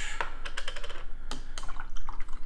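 Small plastic brush-soap tub and its lid handled and set down on a wooden tabletop: a run of light, irregular clicks and taps.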